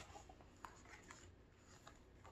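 Faint paper rustling and a few soft taps as the page of a hardcover picture book is turned, heard against near silence.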